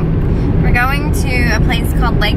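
Steady low rumble of road and engine noise inside a moving car's cabin, under a woman's talking.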